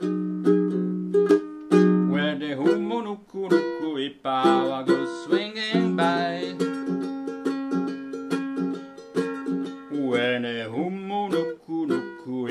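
APC baritone ukulele tuned in fifths, strummed in a steady run of chords. A wavering wordless voice line rises over it about four seconds in and again near the end.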